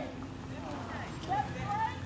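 Car rolling slowly past at low speed, its engine a steady low hum, with faint voices talking in the background.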